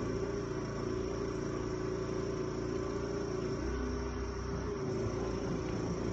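A steady mechanical hum with a low rumble underneath: a motor running continuously in the background.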